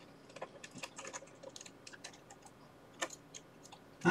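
Faint, irregular small clicks and rattles of a jumper wire being worked into the spring terminals of an electronics project kit, with one slightly louder click about three seconds in.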